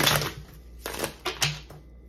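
A deck of tarot cards shuffled by hand: a longer rustle of cards at the start, then about four short, sharp card slaps about a second in.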